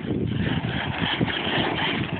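HPI Savage Flux HP radio-controlled monster truck driving over gravel: its brushless electric motor and drivetrain whining steadily, with tyre noise on the loose surface.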